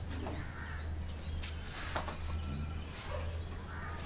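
Birds calling over a low steady hum.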